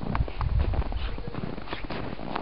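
A toddler's small footsteps in snow, a handful of short, irregular steps over a low rumble that is strongest in the first second.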